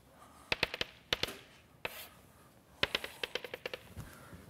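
Chalk knocking and scratching on a blackboard as lines are drawn: short groups of sharp taps, ending about three seconds in with a quick run of taps as a dashed line is dotted out.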